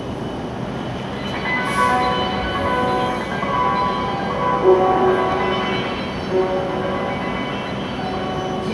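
Steady hum and hiss of an E7-series shinkansen standing at a station platform with its doors open. Short, faint tones of several pitches come and go over it.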